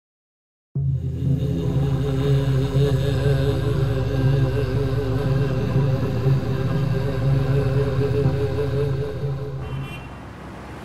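A steady drone of several held low tones that begins abruptly just under a second in and eases off near the end.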